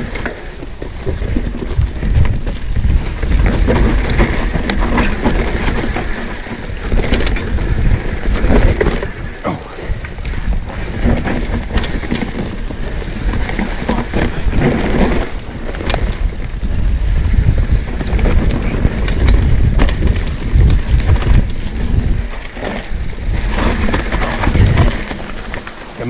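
Orange P7 steel hardtail mountain bike ridden fast down a rough dirt trail: a continuous heavy rumble of tyres over dirt and roots, broken by frequent sharp clicks and rattles from the bike over bumps.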